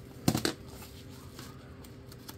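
Scissors cutting a padded bubble mailer: a couple of sharp snips about half a second in, then faint rustling of the mailer and its bubble wrap as it is handled.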